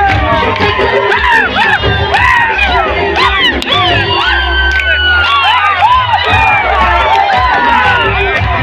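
Large crowd cheering and whooping, many voices overlapping in short high rising-and-falling shouts.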